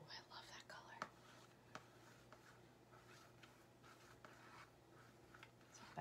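Faint soft swishing of a paintbrush stroking paint onto a paper plate, back and forth, with a few light taps.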